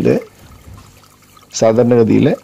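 Faint water pouring and trickling into a plastic drum fish tank from a circulating pipe, with aeration bubbling, heard between bursts of a man's speech.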